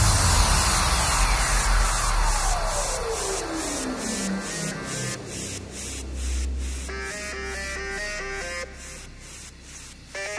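Minimal techno breakdown: the beat drops out and a synth tone sweeps slowly downward over about five seconds above a held bass and ticking hi-hats. About seven seconds in, a stepped synth riff enters as the level keeps sinking.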